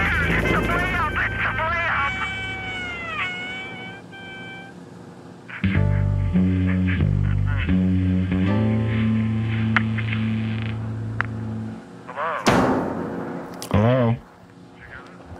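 Music: a rock band recording. In the first seconds a wavering, excited voice sings or shouts over it with gliding tones. From about six seconds in, bass and guitar play held notes that change in steps. The band breaks off near twelve seconds, and a couple of short loud bursts of sound follow near the end.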